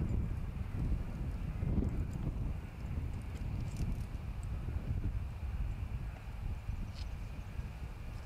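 Wind buffeting the microphone as an uneven low rumble, with a few faint light clicks about four and seven seconds in.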